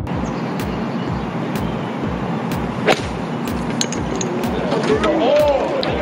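An iron striking a golf ball off the tee: one sharp crack about three seconds in, over the steady murmur of an outdoor gallery. Voices rise near the end.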